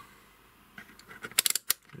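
Rotary range selector of a HoldPeak DM6013L capacitance meter being turned: a quick run of four or five plastic detent clicks about one and a half seconds in, with a few fainter clicks just before.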